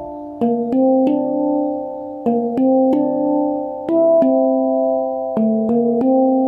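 Handpan in D minor (Kurd) tuning played by hand. Single struck notes ring on and overlap in a repeating phrase: a rising three-note run C4–D4–E4 played twice, then F4 and D4.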